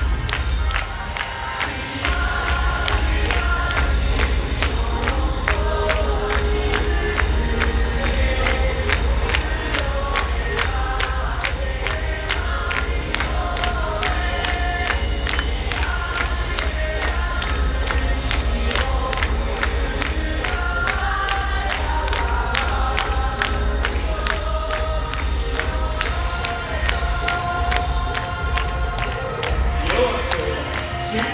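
Loud amplified YOSAKOI dance music with a steady fast beat and heavy bass, with a team of dancers shouting calls over it. The bass comes in about two seconds in.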